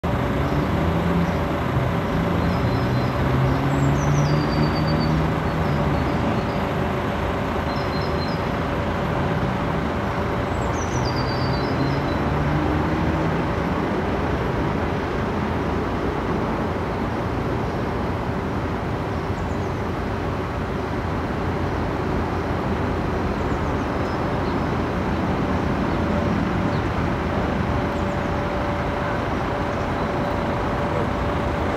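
Steady noise of distant road traffic, with an engine sound swelling and fading a couple of times in the first half. Short high chirps, typical of small birds, come every few seconds.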